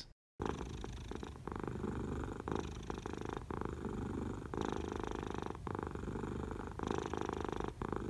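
Domestic cat purring steadily, the purr swelling and easing with each breath about once a second. It starts a moment in, after a brief silence.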